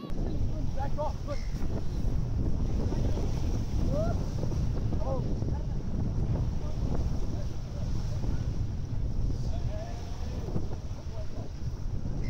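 Wind buffeting the microphone as a steady low rumble, over small waves washing onto a sandy shore.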